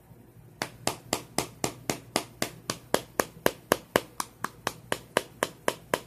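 A tin of Copenhagen Black dip being packed: the can is flicked so its lid taps against a finger again and again, a steady run of sharp taps at about four a second that starts just under a second in.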